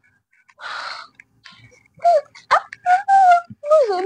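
A woman's exaggerated sobbing: a sharp gasping breath about half a second in, then short high-pitched wailing cries that break up, the last one falling in pitch near the end.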